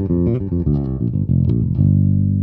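Human Base Roxy B5 five-string electric bass played fingerstyle in passive mode with its passive tone control wide open. It plays a quick run of plucked notes and ends on one held low note near the end.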